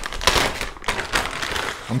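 Clear plastic Ziploc bag crinkling and rustling as it is opened and a filament spool is pulled out of it, a rapid patter of small crackles.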